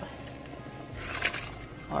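Chopped salt beef and pig's tail tipped from a plastic bowl into a pot of boiling water, with a short splash about a second in over the bubbling of the water.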